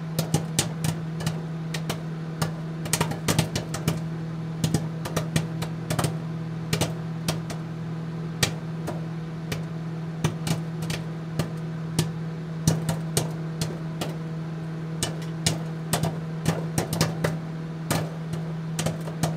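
A steady low hum with irregular sharp pops or clicks scattered over it, a few each second.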